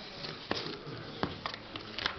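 Sleeved trading cards handled and shuffled on a table, with a few sharp clicks, the clearest about half a second in and again a little past one second, over low room noise.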